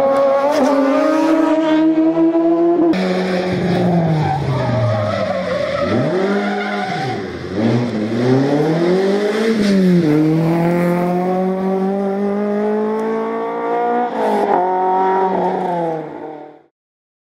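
Citroën Saxo rally car engine working hard through a hairpin. The revs fall away as it brakes and downshifts into the bend, dip and pick up again through the turn, then climb steadily under acceleration out of it, with an upshift partway through.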